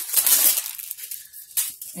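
Knife packaging being handled and opened: a loud rustle in the first half second, then fainter rustling and a short click near the end.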